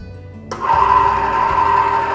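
Small electric screw oil press for home use switched on about half a second in: its motor starts at once and runs with a steady, even whine, very little noise for the machine.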